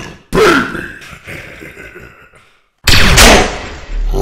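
Venom's monster-voice sound effect: two guttural snarling growls. Each starts abruptly, the first about a third of a second in and the second near three seconds in, and each trails off, the first dropping in pitch.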